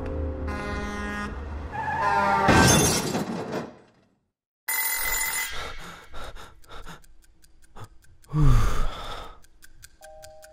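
Film soundtrack: music swells and cuts off about four seconds in. After a moment of silence a sudden bell-like ring starts, followed by a clock ticking steadily, with a loud low falling whoosh near the end.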